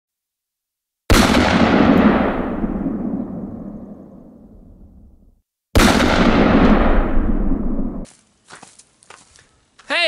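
Two loud blasts: a sudden bang about a second in that fades away slowly over about four seconds, then a second bang just before the middle that is cut off abruptly about two seconds later. A few faint clicks follow near the end.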